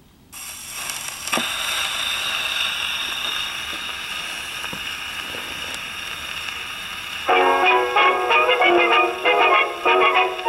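The soundbox needle of an Electrola 101 portable wind-up gramophone set down on a 78 rpm record: the surface hiss of the lead-in groove, with one click about a second in. About seven seconds in, the orchestral recording starts playing, with the hiss still under it.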